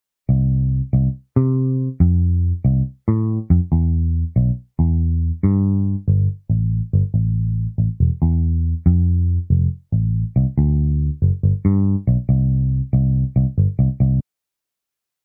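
A software electric bass (GarageBand's "Liverpool" bass sound) playing the bass line of an eight-bar song on its own. It is a string of plucked notes, some held and some short and clipped, each fading after it is struck.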